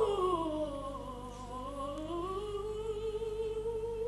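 Operatic soprano voice singing softly. The line slides down into its low range and then glides back up to a quiet held note.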